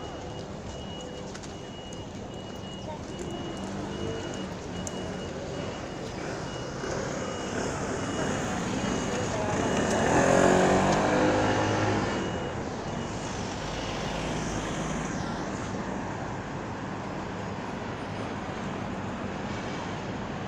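City street traffic with a motor vehicle passing close by, its engine swelling to the loudest point about ten seconds in and fading by twelve. A repeating high-pitched beep sounds through the first several seconds.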